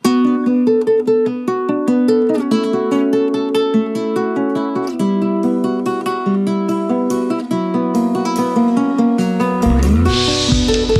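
A guitar plays a folk-rock song intro alone, strumming quick chords. Bass and drums come in right at the end.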